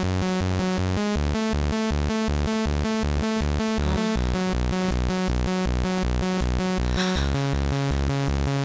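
Instrumental intro of a fast euro-dance track at 160 bpm: a steady, rapid electronic beat over pulsing synth bass and chords. The bass and chords move to new notes about every three seconds.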